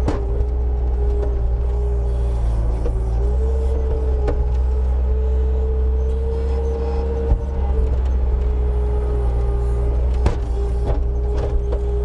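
Bobcat T320 track loader's diesel engine running steadily while the machine drives and digs its bucket into dirt, with a held whine that rises slightly in the middle and falls back. A few sharp knocks break in, one about four seconds in and another near ten seconds.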